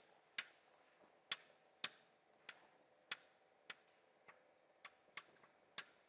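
Chalk tapping and clicking against a blackboard as an equation is written: about ten sharp taps, roughly two a second, over a faint steady room hum.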